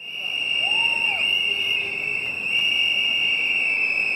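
A loud, steady high-pitched whine: one unwavering tone with fainter overtones above it, over faint background noise.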